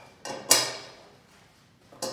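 Two or three sharp metal clicks, the loudest about half a second in, as the set screw of an aluminium beam coupling is hand-tightened with a hex key.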